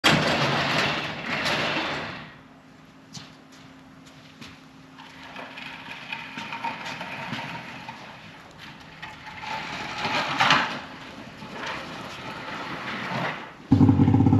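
Electric opener raising an overhead garage door: a steady motor hum for about five seconds, after a loud rushing noise in the first two seconds and followed by another louder rush about ten seconds in.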